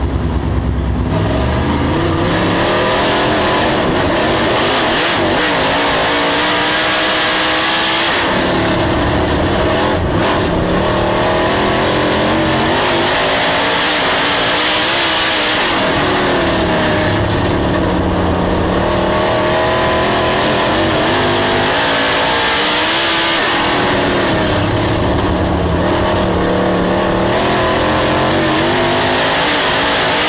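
Dirt late model race car's V8 engine at racing speed, heard from inside the car over loud tyre and wind noise. It picks up speed about a second in, then the revs climb along each straight and fall back into each turn, a cycle about every eight seconds.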